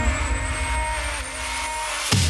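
Trance music in a breakdown: held synth pad chords and a low rumble under a thin high tone that rises slowly in pitch, a sweeping riser effect that sounds like a passing jet. The level dips slightly towards the end, just before the beat comes back in.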